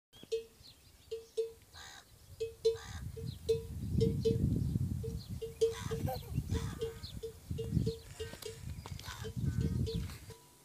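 Camel calf calling with low, rough calls that come in groups after the first few seconds. An irregular string of short ringing pings, all at one pitch, runs underneath.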